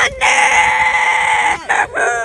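A person's long, high-pitched held cry, one steady note lasting over a second, then a brief break before more voice.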